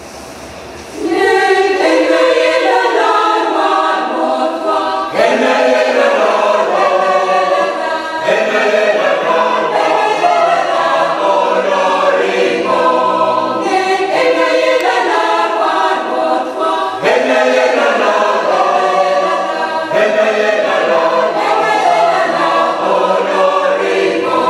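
Mixed church choir of women's and men's voices singing a Christmas carol a cappella in several parts. The singing comes in suddenly about a second in, after a quieter moment.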